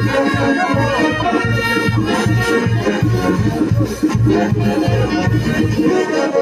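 A live brass band, with sousaphones and saxophones, playing dance music. A steady bass beat comes about two to three times a second.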